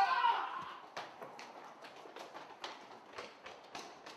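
Several people running on a concrete walkway: quick, uneven footfalls, about three or four a second, fading as they move away. A shout trails off at the start.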